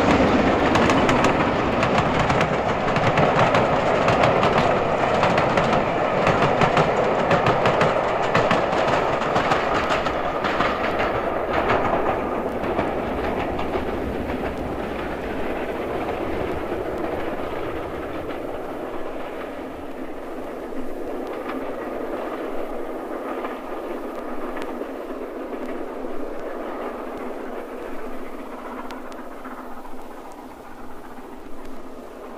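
Steam train running on the line, loud at first and then fading steadily as it draws away. The higher sounds die off first, leaving a fainter rumble by the end.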